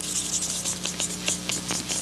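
Marker pen writing on flip-chart paper, a rapid run of short scratchy strokes, over a steady low hum.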